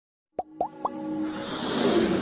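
Logo intro sound effects: three quick rising plops about a quarter second apart, then a swelling whoosh over held musical tones.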